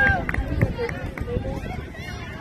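Distant, unworded voices of players and spectators calling out across an outdoor soccer field, several high shouts over a steady low rumble.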